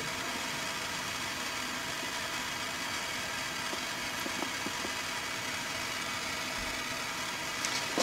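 Propane torch burning with a steady hiss.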